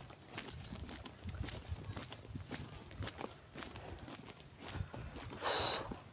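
Footsteps of a person walking on a concrete road at a steady pace, about two steps a second. A brief rush of noise comes near the end.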